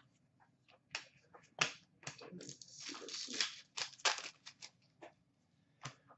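Trading cards being handled by hand: a string of short clicks and rustling slides as cards are flipped through, sorted and set down, busiest in the middle.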